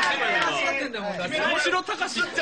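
Several young men's voices talking over one another in a lively group chatter.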